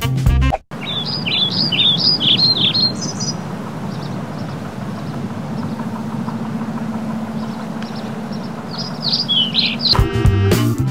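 A songbird chirping outdoors in a quick run of short, high notes for about two seconds, then again near the end, over steady open-air background noise with a faint low hum. Music plays briefly at the start and cuts off under a second in.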